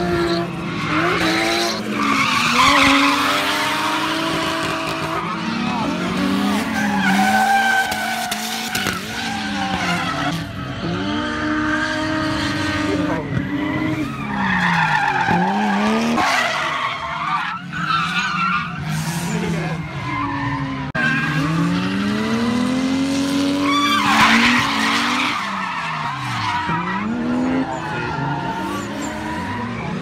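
Drift cars' engines revving up and down hard as they slide sideways through the corners, the engine notes climbing and dropping over and over, with tyres skidding and squealing in several loud swells.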